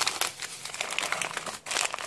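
Plastic and foil packets of a Russian army dry ration crinkling and rustling as they are crammed back into their cardboard box, an irregular run of small crackles.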